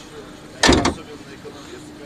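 A Kia sedan's bonnet pressed down by hand and latching shut: one heavy thud with a brief rattle about two-thirds of a second in.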